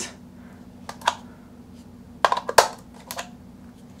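Small plastic clicks and clacks of Sony NP-FW50 camera batteries being handled and pulled from a three-slot USB-C charger: a couple of clicks about a second in, a quick cluster of clacks midway, and one more near the end.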